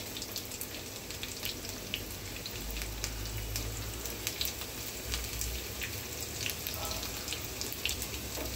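Chopped onion frying in hot oil in a frying pan: a steady sizzling hiss with many small crackles and pops.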